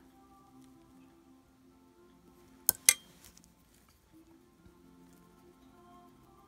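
Faint background music of steady held tones. About three seconds in come two sharp clinks a fifth of a second apart, the loudest sounds heard.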